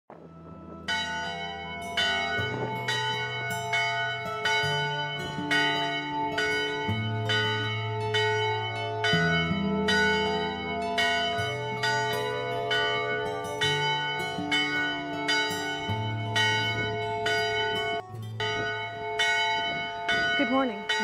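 Church bell on a post, rung by pulling its rope: strikes about twice a second, each ringing on into the next. It starts about a second in, with low sustained tones underneath that shift pitch every couple of seconds.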